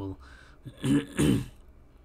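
A man clearing his throat in two quick bursts about a second in.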